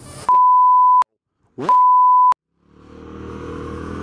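Two steady high-pitched censor bleeps, the first under a second long and the second about half a second, set in dead silence with a brief clipped sound just before the second. About three seconds in, the Kawasaki VN800's engine and wind rumble fade back in as the motorcycle rides on.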